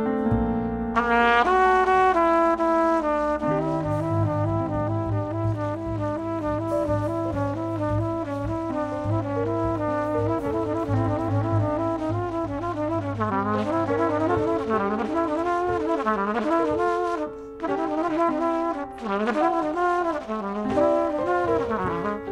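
Live jazz quartet: trumpet playing a fast line of notes over piano, double bass and drums, with two brief breaks in the line near the end.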